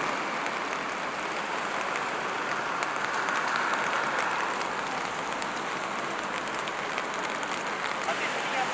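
Rain falling on a city street: a steady, even patter with faint scattered drop clicks.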